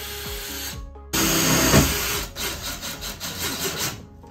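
Cordless DeWalt drill driving self-tapping screws through a wooden floor-frame board into the bus's steel floor. It runs in two goes with a brief stop just under a second in, and the second run is louder.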